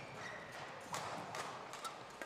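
Badminton doubles play on an indoor court: a few sharp knocks of rackets striking the shuttlecock and feet landing, about a second apart, with brief squeaks of shoes on the court floor.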